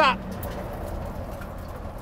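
Steady low rumble of storm wind and vehicle noise, heard from inside the stopped chase vehicle close to a tornado.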